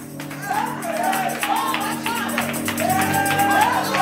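Live church worship music: a keyboard holds sustained chords while a voice sings over it, holding a long note near the end. Light percussion ticks faintly underneath.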